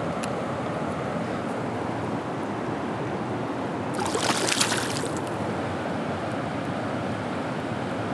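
A small smallmouth bass released from the hand splashes back into the river about halfway through, a brief splash over the steady rush of flowing river water and wind on the microphone.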